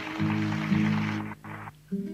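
Piano and acoustic guitar playing the closing chords of a cueca; the held chord breaks off a little past halfway, and after a short gap a new, softer chord sounds near the end.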